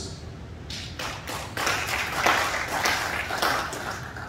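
Audience applauding, starting about a second in, building up and dying away near the end.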